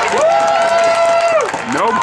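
A single voice shouting one long, high held note of about a second, rising in and falling away, as a reaction to a tackle for a loss. Then a man's speech starts near the end.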